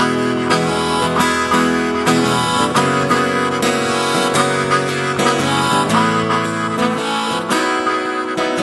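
Instrumental passage of a country-blues song: strummed acoustic guitar with harmonica, no singing.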